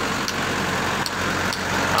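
Large diesel bus engine idling steadily, a low even hum, with a couple of faint ticks over it.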